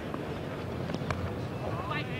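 Steady murmur of a cricket ground crowd, with a sharp knock about a second in as the bat strikes the ball, and a raised voice near the end.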